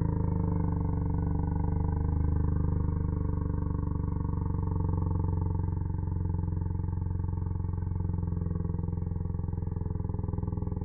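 A boy's shout slowed down by slow-motion playback into one long, deep, continuous roar that holds a steady low pitch and eases slightly toward the end.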